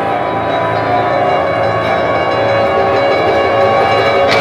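Live string-and-piano quartet of two violins, double bass and grand piano playing long held notes that ring on at a steady level.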